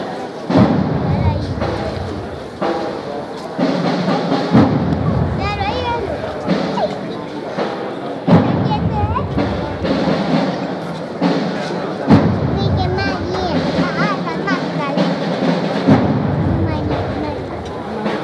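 Processional band playing a slow march, a deep drum struck about every four seconds under held low notes, with crowd voices over it.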